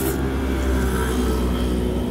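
A motor vehicle's engine running close by in street traffic: a steady low hum that grows louder right at the start.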